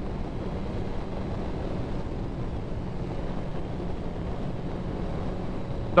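Suzuki GSX-R sportbike engine running steadily at cruising speed, with wind rushing over the microphone.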